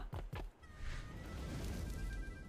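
The Wild Gang online slot's game audio during a free spin, faint: a few soft clicks, then reel-spin sound and background music with a few held notes starting about half a second in.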